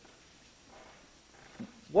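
A quiet pause in a man's speech, with only faint room tone and a soft breath-like sound, then his voice starts again right at the end.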